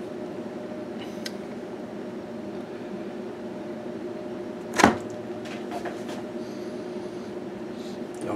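A steady low hum made of several held tones, like a running motor or appliance, with one sharp knock about five seconds in.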